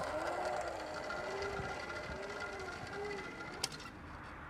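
Playground zip line trolley rolling along its steel cable: a steady whirring hum that fades as the rider travels away, with one sharp click near the end.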